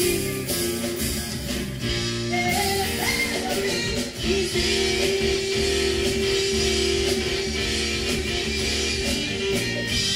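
A live band playing blues-rock: electric guitar, electric bass and drum kit, with a woman singing. A long held note runs through the second half.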